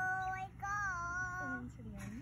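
A high voice singing two long held notes, with a short break between them about half a second in; the second note bends a little in pitch.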